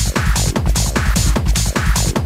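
UK hard house dance music at about 150 beats per minute: a steady kick drum about two and a half beats a second under bass and busy high hi-hat percussion.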